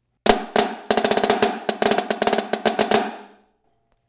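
Pearl marching snare drum played with sticks in a quick rudimental phrase: two flams, a seven-stroke roll, then flam accents with accented diddles and three closing flams. The strokes start just after the beginning and stop about three seconds in, the drum ringing briefly after.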